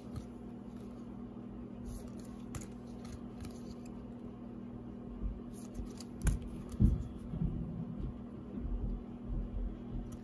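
Plastic trading-card holders being handled and shuffled: a few light plastic clicks and soft taps, more of them in the second half, over a steady low hum.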